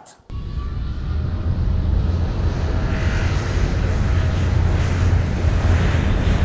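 A rumbling sound effect, heavy in the bass, that starts suddenly and swells slowly, like a passing jet.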